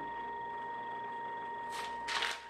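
Quiet room tone with a steady high-pitched electrical whine in the recording, and a brief hiss near the end.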